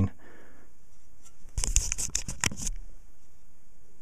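A short run of clicks and light scrapes from metal files being handled against each other and the tools on the bench, starting about a second and a half in and lasting about a second.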